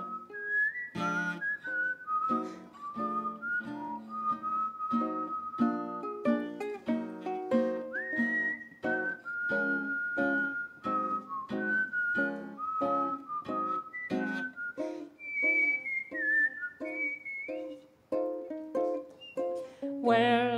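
A person whistling a melody, with small slides between notes, over a strummed acoustic string accompaniment in a steady rhythm: an instrumental break in an early-20th-century-style popular song.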